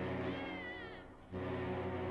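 Deep ship's horn sounding in long blasts, with a short break between them. A high, wavering, falling cry rises over it about half a second in.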